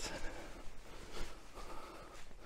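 Quiet, irregular footsteps and rustling on a mossy forest floor as someone walks along a path.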